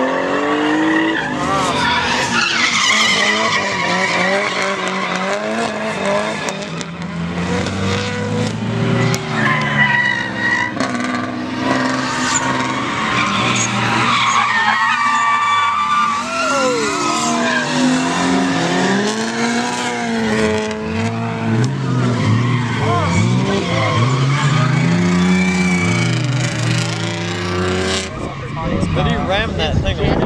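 Drift cars' engines revving up and down repeatedly as they slide through the corners, with tyres screeching on the asphalt.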